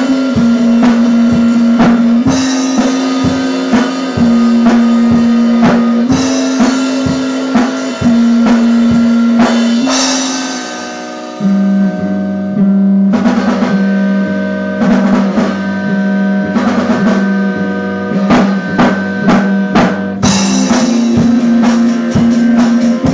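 Instrumental band music: guitar chords changing about every two seconds over a drum kit with bass drum and snare. About ten seconds in a chord rings out and fades, then a new section comes in on lower bass notes with busier drumming.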